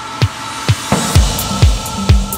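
Instrumental intro of an electronic dance club remix: a steady four-on-the-floor kick drum, about two beats a second, under held synth tones. A rising noise sweep gives way about a second in to heavier, deeper kicks, and a bass line comes in soon after.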